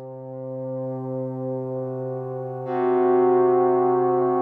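Arturia MiniFreak synthesizer playing long sustained notes on a physically modelled string patch. About two and a half seconds in, the strings are excited again automatically and the sound swells louder and brighter, then holds.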